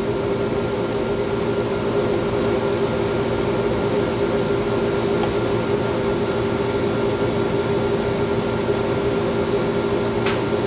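Steady machine hum of a PECVD system's vacuum pumping and support equipment running, with several held low tones and a high hiss, a little louder after the first second or two.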